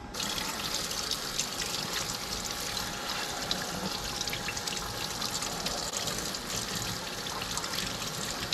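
Kitchen faucet running steadily into a stainless steel sink while pieces of raw cusk fillet are rinsed by hand under the stream.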